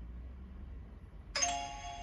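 Countdown timer alarm: a single bell-like chime of several ringing tones that sounds suddenly about a second and a half in and rings on as it fades. It marks the end of a 5-minute Pomodoro break and the start of a 15-minute study session.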